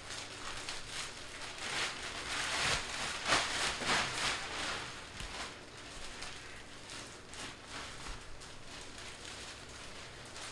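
Stack of Topps Merlin Chrome trading cards being gathered and shuffled through by hand: a dry rustle of cards sliding against each other, with quick flicks. It is loudest from about two to five seconds in, then softer.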